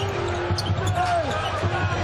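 Basketball being dribbled on a hardwood court, a series of bounces, with short sneaker squeaks over the low steady noise of the arena.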